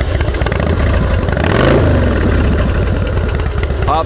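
A 2002 Harley-Davidson Fat Boy's carbureted Twin Cam 88 V-twin idles just after starting right up. The engine speed rises and falls once about a second and a half in.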